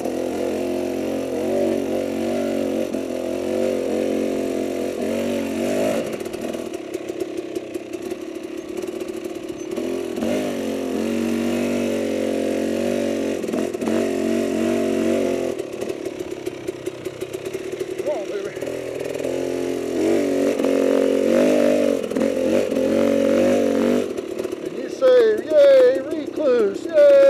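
KTM dirt bike engine revving up and falling back in repeated bursts of throttle under load on a rocky climb. It drops back twice, briefly about six seconds in and for a couple of seconds just past the middle, then picks up again.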